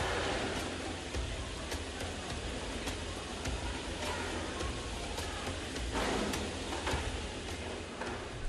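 Processing-plant floor noise: a steady rush like running water over a low machinery hum, with scattered light clicks.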